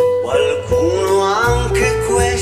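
A man singing a slow ballad in Italian, holding and bending long notes, over an instrumental backing track.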